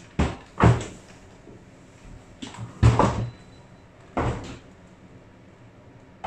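Hotel room door being handled and pulled shut as a wheeled suitcase is taken out: four separate knocks and clunks, the loudest about three seconds in.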